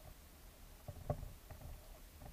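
Faint underwater ambience picked up by the camera: a low rumble with a few short clicks, the loudest about a second in.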